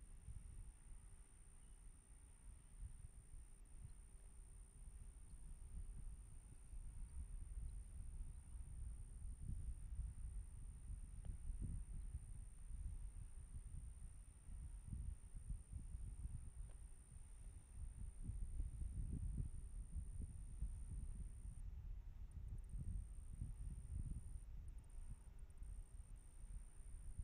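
Faint, uneven low rumble rising and falling in gusts, with a steady high-pitched whine above it: outdoor ambient sound picked up at the launch pad during propellant loading.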